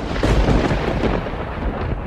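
A sudden loud rumbling crash that starts abruptly and slowly fades over about two seconds, a thunder-like boom laid in as a dramatic sound effect across a scene cut.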